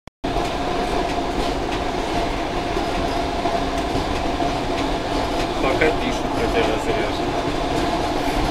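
ER2 electric multiple unit running along the track, heard from inside the driver's cab: a steady running noise with a constant whine through it.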